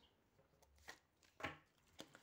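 Oracle cards being handled and drawn from the deck: two soft taps about half a second apart, the second louder, against near silence.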